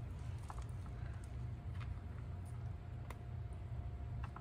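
A cat lapping pet milk from a bowl: a few faint, scattered licking clicks over a steady low rumble.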